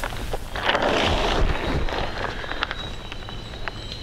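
Crinkling rustle of a silver reflective tarp being handled, loudest about a second in and then fading, with a few light clicks.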